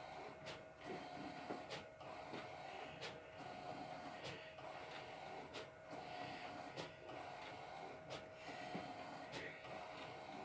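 Large-format roll-paper printer running as it prints: a faint steady whine with a soft click about once a second.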